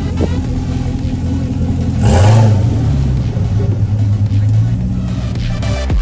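Car engine revving about two seconds in, its low note held for about three seconds before dropping away, under faint electronic dance music.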